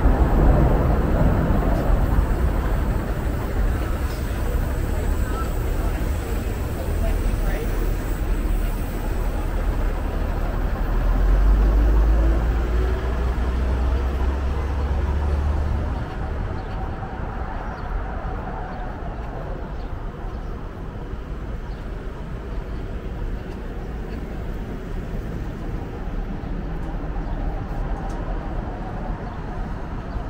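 City street traffic: a steady low rumble of passing cars and trucks, with a heavier rumble swelling about eleven seconds in and cutting off suddenly about five seconds later, after which the traffic is quieter.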